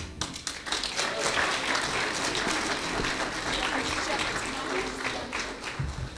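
Congregation applauding, a dense steady clapping that starts as the singing ends and dies away near the end.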